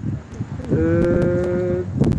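A man's drawn-out hesitation sound, "eee", held at one flat, unchanging pitch for about a second, starting under a second in.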